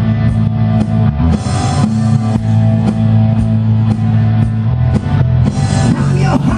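Live rock band playing an instrumental passage: electric guitar, bass and drum kit, loud through the PA, with a steady beat of about two drum strokes a second.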